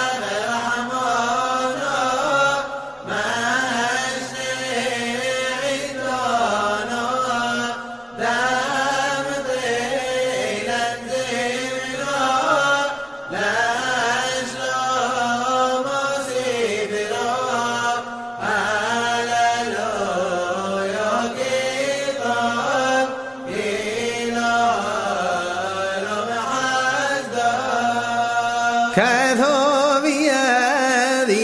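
Voice chanting a Hebrew piyyut in the Yemenite style, the melody bending and ornamented, in long phrases broken by short pauses about every five seconds.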